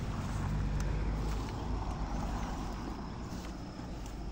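Leaves and stems rustling and brushing as someone pushes on foot through dense brush, with a few light snaps, over a steady low rumble on the microphone.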